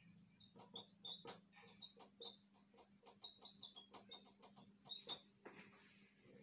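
A marker writing on a whiteboard: a faint, quick string of short high squeaks and taps as the letters are written, over a low steady hum.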